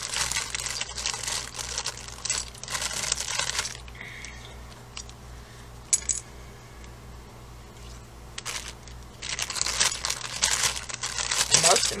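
A thin plastic bag crinkling as it is handled, with small metal clinks from the empty metal watercolor pans inside it. This comes in two bouts, with a quieter stretch between them and one sharp click about halfway through.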